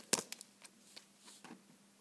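Cardboard coin holders being handled on a table: a few sharp clicks and taps, the loudest just after the start, with fainter ones over the next second and a half.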